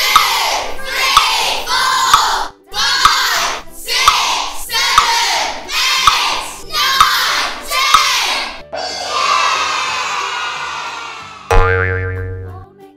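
Cartoon sound effects repeating about once a second, each a sharp click followed by a short springy 'boing'-like sound. Then a longer crowd-like cheer fades over about three seconds, and a musical note sounds near the end.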